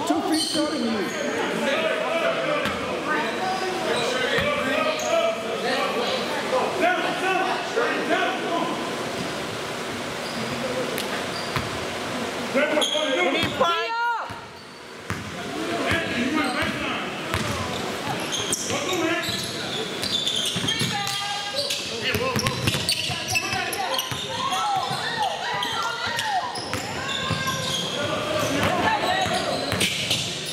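A basketball bouncing on a hardwood gym floor during play, with players' and onlookers' voices, all echoing in a large gym. The sound dips briefly about halfway through.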